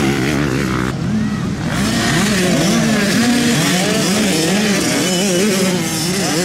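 Several motocross dirt bike engines revving on the track, their pitches rising and falling and overlapping one another.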